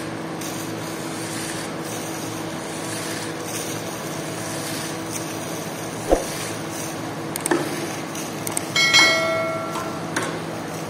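A squeegee on a long handle pushing soapy water across a soaked rug and wet concrete floor, water sloshing and swishing over a steady machine hum. A sharp knock comes about six seconds in and another near seven and a half seconds, then a short metallic ring near the end, the loudest sound in the stretch.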